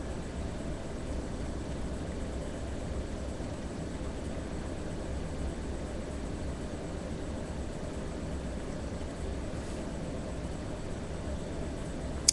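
Steady hiss with a low hum underneath and no distinct events: background room noise picked up by the microphone.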